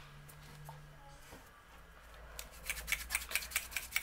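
Glass gel polish bottle rolled quickly between the palms to mix the gel: a run of light, rapid clicks, about seven a second, starting a little past halfway and growing louder, as the bottle taps against long acrylic nails and fingers.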